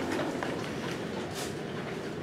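Steady room noise in a pause between words, with a faint brief rustle about one and a half seconds in.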